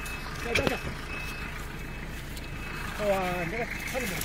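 A farm tractor's engine running steadily while its front loader works close by, with a faint high beep-like tone that comes and goes. Short bits of voices come in about half a second in and again near the end.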